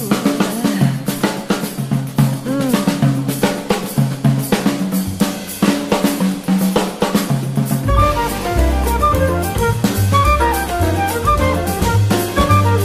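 Big-band jazz samba instrumental with the drum kit to the fore, snare, rimshots and bass drum played densely. About eight seconds in, the bass and the rest of the band, horns included, come back in.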